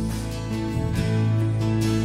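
Live worship band playing an instrumental passage between sung lines: acoustic guitars over sustained chords, with the chord changing about three-quarters of a second in.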